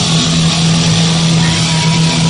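Heavy metal band playing live at full volume, with distorted guitars holding a steady low note.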